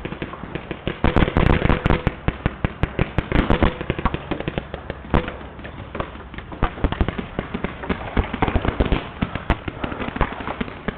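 Paintball markers firing across the field: dense, irregular rapid popping from many guns at once, with thicker flurries about a second in and again around three seconds in.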